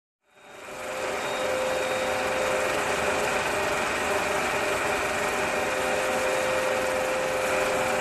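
Film projector running: a steady mechanical whir with a held hum, fading in over the first second.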